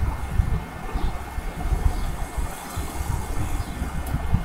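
Low, uneven rumble with a faint hiss above it: background noise.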